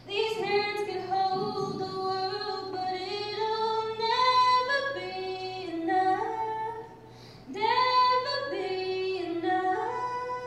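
A woman singing solo in long held notes, in two phrases with a short pause for breath about seven seconds in.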